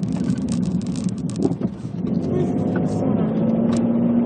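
Inside a moving car: a steady low rumble of engine and road noise. A steady hum joins in about three seconds in.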